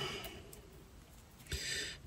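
A quiet pause with faint handling noise, then a soft breath drawn in near the end.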